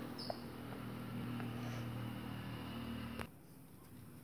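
Faint, steady low hum with a single light click shortly after the start; the hum cuts off abruptly a little over three seconds in.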